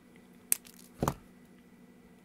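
Two brief handling noises on a workbench while a breadboard circuit is being wired: a sharp click about half a second in, then a duller knock about a second in, over a faint steady hum.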